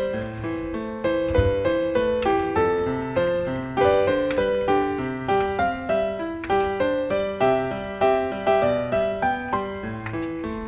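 Background piano music: a steady flow of single notes over lower sustained notes, each struck and fading.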